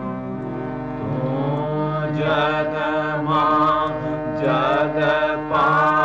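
A devotional Gujarati prayer song: a voice sings slow, held, gliding notes over a steady instrumental drone, the singing entering about a second in.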